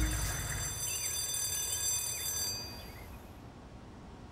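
Soft outdoor background in an animated soundtrack: a low rumble that dies away within the first second, a few faint bird chirps, and high sustained tones that fade out about two and a half seconds in, leaving a faint steady hush.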